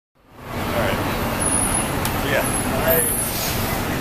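Steady city street traffic noise, with faint voices of people talking.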